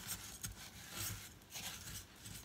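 Silicone spatula stirring desiccated coconut in a stainless steel pot: soft, irregular scraping and rubbing strokes.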